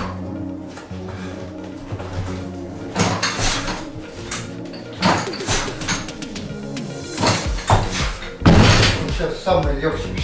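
Loaded barbell with bumper plates being pulled from the floor, not taken to the chest, then set back down on the platform with heavy thuds and a rattle of plates near the end. Music plays in the background.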